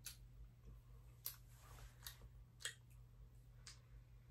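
Near silence broken by about five faint, short lip smacks, unevenly spaced, as lip balm is tasted on the lips.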